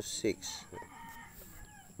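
A faint animal call in the background, heard under a brief voice sound about a quarter second in.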